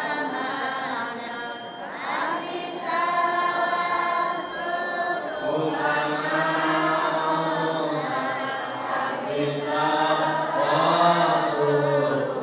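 Several voices chanting together in a slow, melodic recitation with long held notes. A deeper male voice comes in louder about halfway through.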